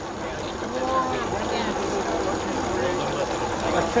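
Voices of people talking in the background, faint and broken, over a steady hiss of outdoor noise.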